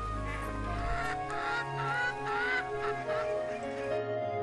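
Background music with a few bird calls in the middle, three or four short calls that each rise in pitch.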